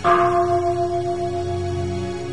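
A bell is struck once at the start and rings on with a long, slowly fading tone over soft background music.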